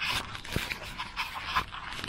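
Rice paddy herb being cut and handled by hand close by: irregular rustling of leaves with sharp snaps and clicks of stems.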